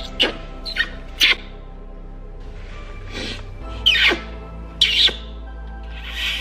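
A series of short, squeaky kisses on a cheek, about six quick smacks, some in close pairs, over steady background music.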